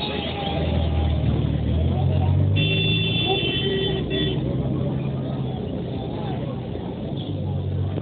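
Auto-rickshaw engine running close by amid crowd chatter, with a vehicle horn sounding for nearly two seconds partway through.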